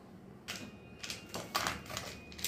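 A metal spoon clinking against a stainless-steel mixer-grinder jar: a few light clicks, each with a faint ring.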